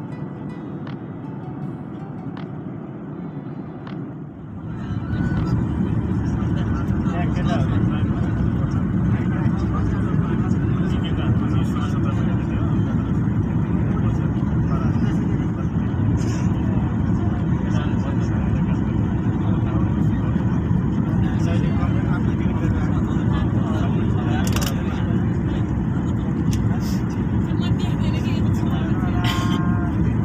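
Steady jet airliner cabin noise heard from a window seat, the rush of engines and airflow, with the wing flaps extended on approach. It gets clearly louder about five seconds in.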